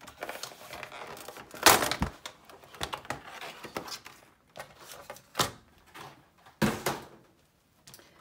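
Clear plastic packaging crinkling and crackling as a We R Memory Keepers 'The Works' all-in-one crafting tool is pulled out of it, loudest about two seconds in. Later come two sharp knocks as the plastic tool is set down and moved on the table.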